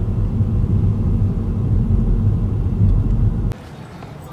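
A car driving along a road, heard from inside the cabin: a steady low rumble of engine and tyre noise that cuts off suddenly about three and a half seconds in.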